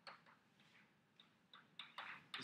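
Chalk writing on a blackboard: a few faint, short taps and scratches of the chalk as words are written, a little denser near the end.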